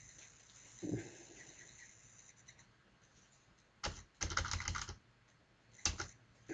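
Computer keyboard being typed on: a quick run of key strokes about four seconds in, lasting about a second, and a single sharp key click near the end. A soft thump comes about a second in.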